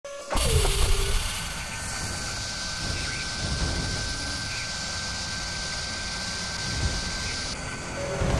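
Sound effects for an animated machine-tool drill spindle: a hit with a falling swoop at the start, then a steady mechanical drone with a low rumble, a thin high whine and hiss. The hiss cuts out shortly before the end.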